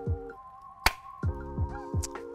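Background music with held tones and low notes, broken by one sharp snap a little under a second in as a balloon slingshot fires a BB.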